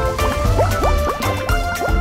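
Cartoon bubble sound effect: a quick run of about half a dozen short, rising bubbly blips, over cheerful background music with a steady beat.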